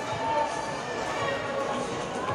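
Indistinct voices of spectators in the stands, talking and calling out, over a steady background murmur.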